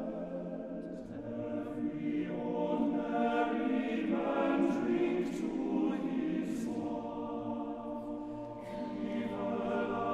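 A choir singing sustained chords, with sung consonants hissing through. About a second in the harmony shifts and a deeper bass part enters.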